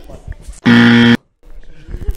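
A buzzer sounds once: a harsh, steady buzz of about half a second that starts and cuts off abruptly.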